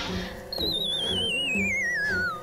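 Cartoon sound effect: a whistle with a fast wobble gliding steadily downward in pitch, starting about half a second in, over soft background music.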